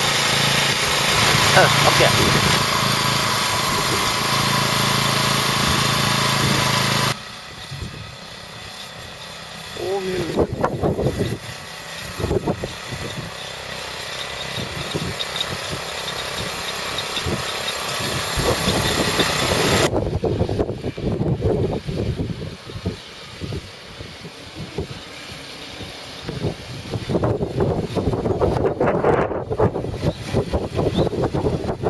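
A fertilizer spreader's small engine running. It is loud and steady with a constant hum for the first seven seconds, then cuts off abruptly to a quieter, uneven run with scattered clatter.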